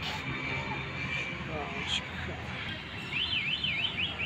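Steady background traffic hum. Near the end, a brief high-pitched electronic-sounding warble sweeps up and down several times a second.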